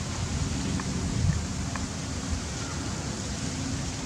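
Steady outdoor background noise with a low rumble and a few faint, short high chirps.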